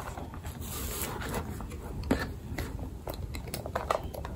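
Rustling of a fabric dust bag as its flap is opened and a small monogram-canvas pouch is slid out, with scattered light clicks and taps from handling.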